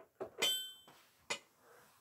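A metronome being reset to two-four: a couple of small clicks and one short ringing tone about half a second in, then another sharp click a little after a second.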